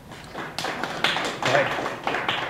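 Audience applauding, a quick patter of many hand claps that starts about half a second in.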